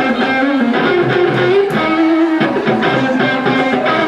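A live band playing, with electric guitar to the fore over bass, drums and keyboards.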